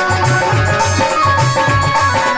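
Instrumental devotional jagran band music: a steady drum beat, about four strokes a second, under held melody notes, with no singing.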